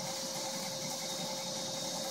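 Shop vacuum running as a blower, its hose held to a handmade jet engine to push air through it: a steady whine with a rush of air.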